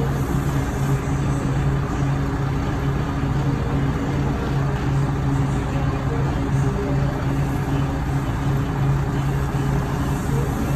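Steady low droning hum of a running motor over a constant rush of background noise.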